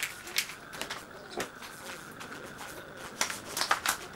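Newspaper crinkling and crackling as it is pinched and pressed tight around the bottom of an aluminium drinks can. A few sharp crackles come in the first second, it goes quieter, then a quick cluster of crackles comes near the end.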